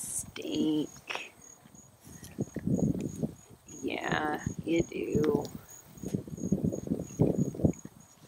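Goats grazing right against a wire fence, with short crackly sounds of grass being cropped and a few brief voice-like calls. An insect, likely a cricket, chirps steadily in a thin high pulse about three times a second.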